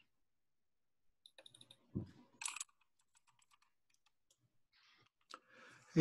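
A few faint, scattered computer keyboard and mouse clicks, with a soft thump about two seconds in and stretches of near silence between them.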